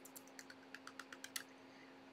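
Faint, quick run of light clicks, about ten in a second and a half, then they stop.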